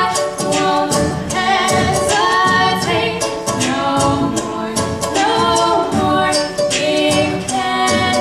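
Two female voices singing together over a strummed ukulele.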